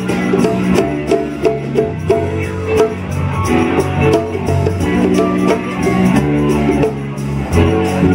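Live funk band playing a groove jam: electric guitar, bass, drum kit and conga percussion, with a steady beat of drum strokes under held notes.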